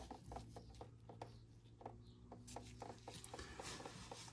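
Near silence, with faint scattered ticks and rubbing from hands handling a copper brake pipe and its brass fitting.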